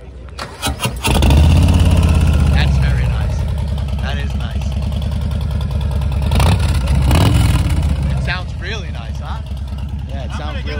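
Harley-Davidson Low Rider ST V-twin with Vance & Hines pipes cranked on the starter, catching about a second in and idling loud and deep. The throttle is blipped twice a few seconds later before it settles back to idle.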